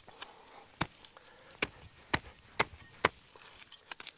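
Steel blade of a Cold Steel Special Forces shovel chopping into soil and roots: about half a dozen sharp strikes, roughly two a second, stopping about three seconds in.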